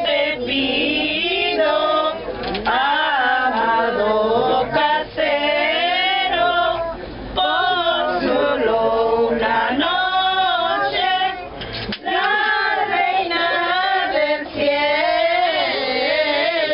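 A group of mostly women's voices, with some men and children, singing a traditional Mexican posada song together, with brief breaths between lines.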